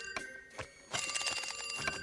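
Cartoon telephone bell ringing twice with a rapid jangle: a short ring at the start and a longer one about a second in.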